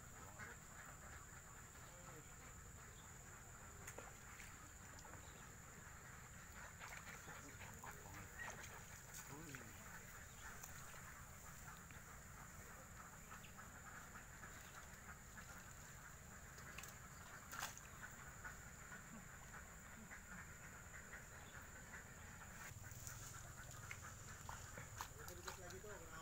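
Faint ducks quacking over quiet outdoor ambience, with a steady high-pitched whine throughout and a few light clicks. A man's voice starts right at the end.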